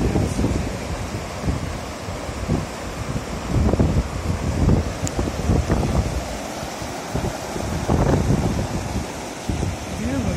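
Wind buffeting the microphone in irregular gusts over a steady rush of water from hot-spring runoff spilling down a mineral terrace into a river.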